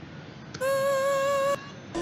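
A man's voice singing one held high note in an R&B ballad, steady in pitch, for about a second. A short sung fragment starts just before the end.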